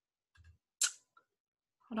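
A couple of faint knocks, then one short, sharp click-like noise just under a second in.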